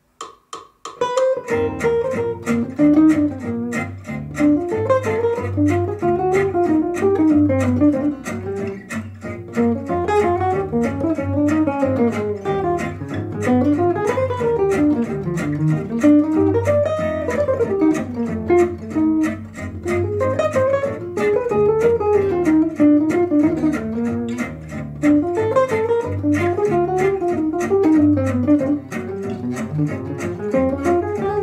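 Archtop jazz guitar playing a flowing bebop line over a backing track with a bass line and a steady beat. It starts about a second in, just after a few count-in clicks.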